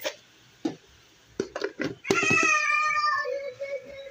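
A cat meowing: one long drawn-out call, about two seconds long, starting about two seconds in and sinking slowly in pitch. A few short clicks and bits of sound come before it.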